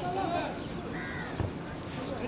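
Distant voices shouting across an open field, with one short harsh call about a second in and a dull thump just after.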